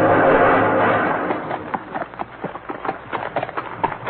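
The end of a music cue dies away over the first second. Then comes a quick, irregular run of sharp clops, a radio-drama hoofbeat sound effect of a horse coming on.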